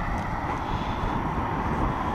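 Steady road traffic noise with a low, fluctuating rumble of wind on the microphone.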